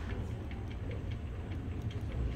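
Steady low background hum with a few faint, light ticks.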